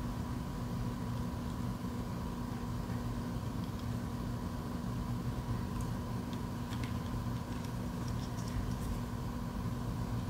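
Steady low electrical hum with a faint higher whine, and a few faint small clicks in the second half as a small screwdriver turns a screw into a plastic key fob case.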